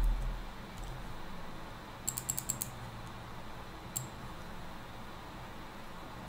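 Computer keyboard keys tapped in a quick run of about six clicks about two seconds in, then one more single click about four seconds in.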